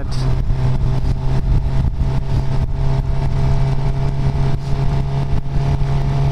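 Suzuki GSX-R sportbike's inline-four engine running at a steady cruise in fifth gear, with wind noise over the rider's microphone.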